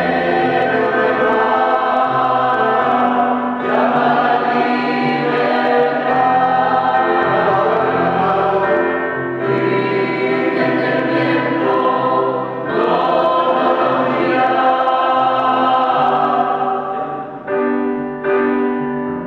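Mixed choir of adults and children singing in harmony with electronic keyboard accompaniment, in sustained phrases a few seconds long with short breaks between them.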